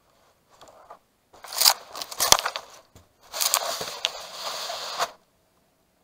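Leaves and twigs of willow brush brushing and scraping against the camera in irregular bursts. The noise cuts off suddenly about five seconds in.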